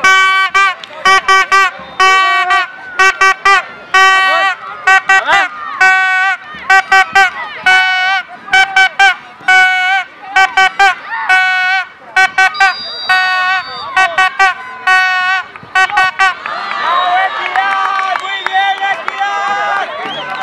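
A horn blown over and over in short, irregular toots, every one on the same note, with children shouting around it. In the last few seconds the toots thin out and a babble of excited young voices takes over.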